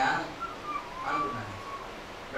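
A person whistling a few notes that step down in pitch: two short notes, then a longer held note. A brief spoken word comes just before.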